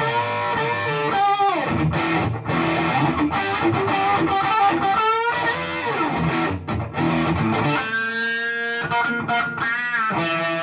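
Fender Noventa Telecaster electric guitar, with its single P90-style Noventa pickup, played through an amp with some overdrive. Single-note lead lines with notes bent and slid up and down, and a chord left ringing about eight seconds in.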